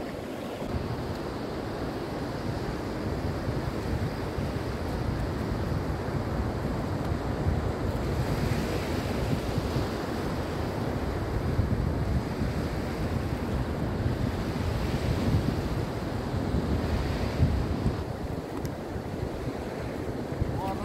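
Waves breaking on a sandy beach as a steady wash of surf noise that swells and eases a little, with wind rumbling on the microphone.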